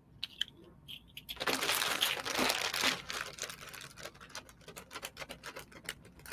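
Jewelry being handled: a silver chain bracelet and its card tag rustling and crinkling for about a second and a half, followed by a quick run of light clicks and clinks as it is set down.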